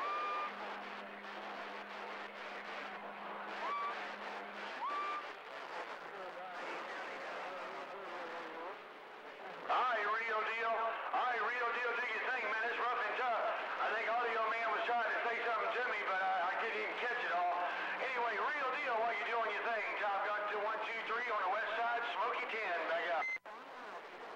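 Unclear, overlapping voices coming through a CB radio's speaker, with a steady low hum over the first few seconds and a few short chirps. The voices get louder from about ten seconds in, and the sound cuts off just before the end.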